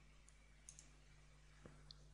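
Faint computer mouse clicks, a few short ticks with one close pair, over near-silent room tone with a steady low hum.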